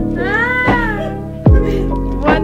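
A domestic cat meows once, a call that rises and then falls in pitch over about a second, over background music with a steady beat.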